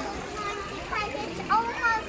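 Children's excited, high-pitched voices and squeals without clear words, loudest near the end, over the steady splash of a koi pond's fountain jets.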